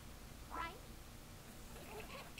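A single brief, faint, high-pitched vocal call about half a second in; otherwise quiet.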